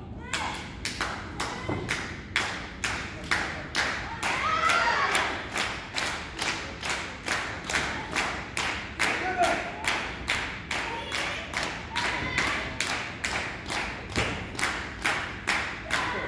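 Audience clapping in unison as steady rhythmic encouragement, about two and a half claps a second, with a couple of short cries over it.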